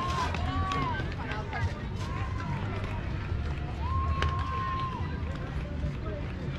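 Several high voices shouting and calling across a softball field, with one long held call a little before the end. A steady low rumble of wind on the microphone runs underneath.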